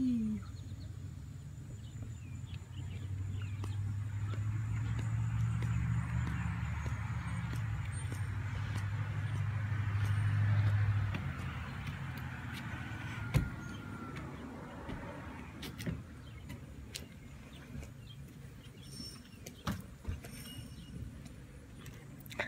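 A car passing by: a low engine hum and road noise swell over several seconds, peak about eleven seconds in, then fade away. Scattered light clicks and one sharp knock follow as it dies out.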